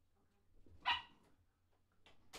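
A dog barking once about a second in: a single short, high-pitched bark.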